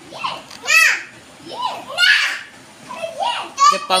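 Indian ringneck parrot giving a series of short, high-pitched squawky calls, each rising and then falling in pitch, about half a dozen in a row.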